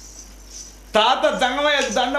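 A short lull with only a faint high-pitched hiss. About a second in, a man's loud, shouted voice breaks in, declaiming in the dramatic storytelling manner of an Oggu Katha performer.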